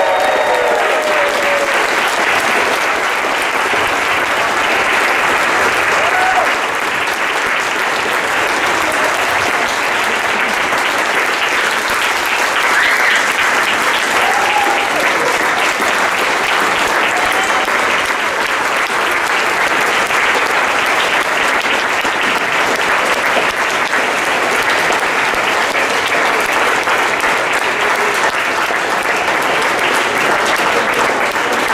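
Audience applauding steadily after a speech, a long ovation, with a few brief voices calling out over the clapping.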